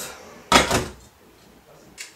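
A single short clunk about half a second in, the kind of knock made by handling pans or cupboards in a kitchen, followed by quiet room tone.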